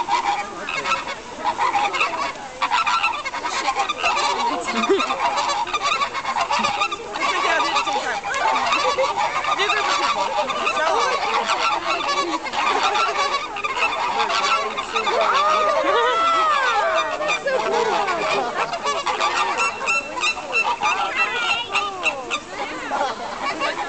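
A flock of American flamingos honking all together in a steady, overlapping din of goose-like calls, with a few rising-and-falling calls standing out about two-thirds of the way in. The birds are calling during a group display with necks stretched upright.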